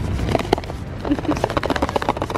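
Laughter in quick short pulses.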